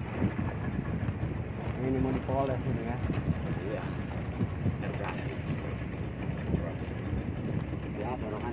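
Speedboat underway on open water: steady engine and water rush with wind on the microphone. A voice comes through faintly about two seconds in.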